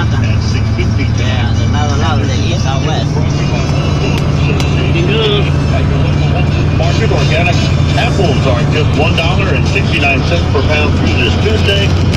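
Radio announcer speech with some music under it, playing from a car radio, over the steady low drone of the car driving, heard inside the cabin.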